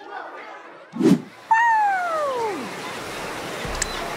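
Cartoon sound effects: a short thump about a second in, then a single falling tone that slides steadily down in pitch over about a second. Near the end a steady hiss like surf comes in.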